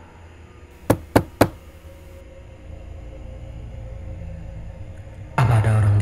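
Three quick knocks on a door about a second in, spread over about half a second, over a low steady drone.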